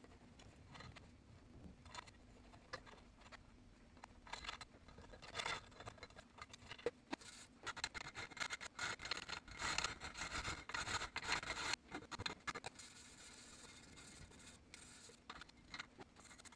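Hand file scraping on the welded-on bung of an aluminium intercooler pipe in a run of short, irregular strokes, sparse at first and busiest in the middle, as the bung is filed down to let the water-methanol nozzle sit deeper.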